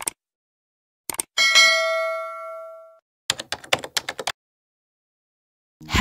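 Subscribe-button sound effects: mouse clicks, then a bright notification-bell ding that rings out for about a second and a half, followed by a quick run of about eight clicks.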